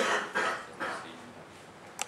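Three short bursts of a human voice, about 0.4 s apart, in the first second, then a sharp click at the end.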